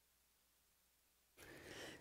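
Near silence, then near the end a faint in-breath just before speech.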